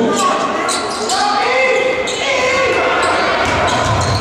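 Basketball bouncing on a hardwood gym floor during live play, with several short impacts among shouting players and crowd voices in a large gymnasium.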